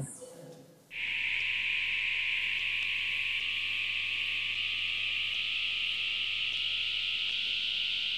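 Simulation of severe hearing loss from lost outer hair cells: a steady hiss of static begins about a second in, with a faint musical scale of plain tones climbing note by note behind it, barely distinguishable through the noise.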